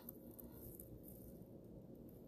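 Near silence: faint low background rumble.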